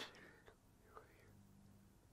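Near silence: quiet room tone in a pause between a man's words, with the end of a word fading out at the start and a couple of faint clicks.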